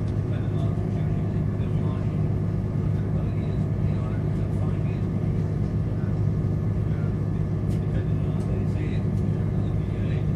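Cabin noise inside a Class 170 Turbostar diesel multiple unit running at speed: a steady low rumble from the underfloor diesel engine and the wheels on the track.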